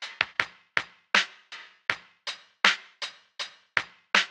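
A percussion loop playing back in Reaper through a ReaEQ filter preset that cuts out its low end and top end. It is a steady run of short, sharp hits, about three a second, some in quick pairs.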